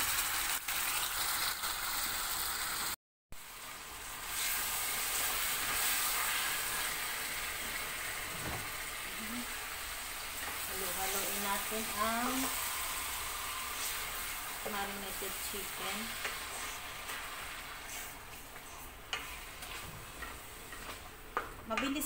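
Marinated chicken pieces sizzling as they fry with browned onions in a stainless steel pot, stirred with a spatula. The sizzle cuts out for a moment about three seconds in and eases off toward the end.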